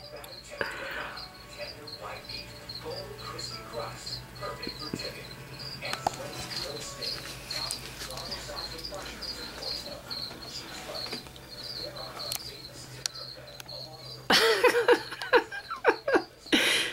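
Cricket chirping in a steady, regular run of short high chirps, several a second. Near the end a person's voice comes in loudly.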